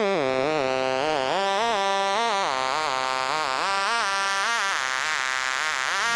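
Music: a wavering synthesizer tone whose pitch rises and falls about twice a second, with no drums. Near the end the pitch slides down.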